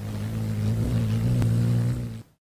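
Hummingbird wing-hum sound effect: a steady, low buzz of rapidly beating wings.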